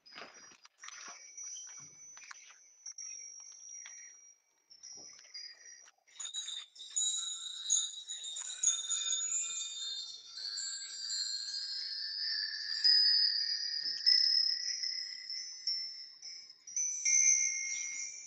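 Chimes ringing: several high, overlapping tones that build up from about six seconds in and ring on, after a few soft knocks and rustles at the start.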